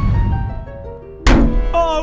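Cartoon sound effects: a low thud, then a run of musical notes stepping downward like a fall, ending in a loud crash about a second and a quarter in.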